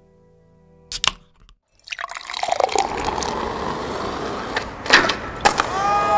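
Intro logo sound design: a held music chord fades out, a sharp click comes about a second in, then after a short gap a steady noisy hiss with a few sharp knocks runs on, and musical tones slide in near the end.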